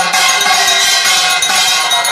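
Bells ringing continuously and loudly: many overlapping, steady bell tones with a bright jingling above them.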